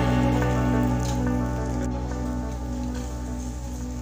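Background music: a held chord rings on and slowly fades away.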